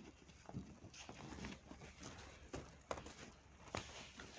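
Faint handling sounds: a few small clicks and rustles as a metal pin badge is worked through the fabric of a pencil case.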